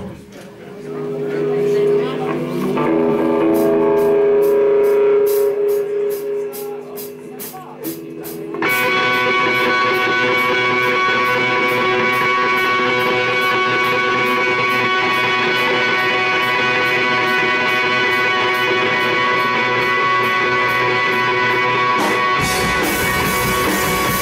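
Rock band playing live: a quieter guitar intro of held chords over a steady ticking beat, then about nine seconds in the full band comes in loud and stays dense, with a heavier low end joining near the end.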